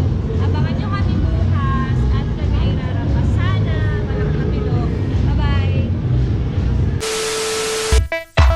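Women's voices talking in a large hall over a heavy low rumble. About a second before the end the sound switches to a steady hiss with one held tone, which cuts off suddenly.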